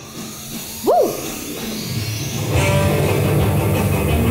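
Start of a rock instrumental for electric guitar and violin. About a second in, a single note swoops up and falls back down; a second and a half later the full piece comes in, with electric guitar over a heavy low rhythm.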